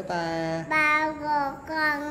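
A young child singing in a high voice: a long held note that ends about half a second in, followed by three short sung notes.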